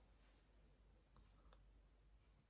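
Near silence: room tone, with a few faint clicks a little past the middle.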